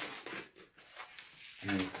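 Faint rubbing of a latex 260 modelling balloon in the hands as it is twisted, in a quiet gap between bits of speech.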